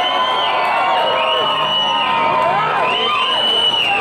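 Concert crowd cheering, with many voices whooping and screaming over each other at a steady, loud level.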